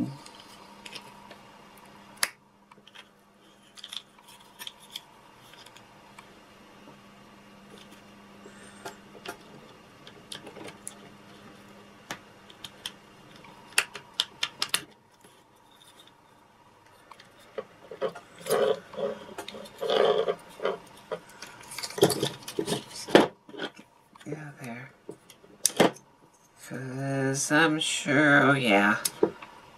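Scattered small clicks and taps of steel pliers and a toy robot's plastic gearbox being handled as the pliers work at its small plastic gears, with a louder scrape about two-thirds of the way through.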